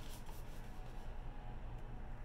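Faint rustling and rubbing of hands on a hardcover picture book's cover and pages as it is held and shifted, over a low steady hum.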